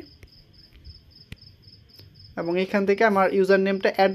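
A high, evenly pulsing chirp, about five pulses a second, typical of a cricket. There is a single click just after the middle, and a man's voice starts talking about two and a half seconds in.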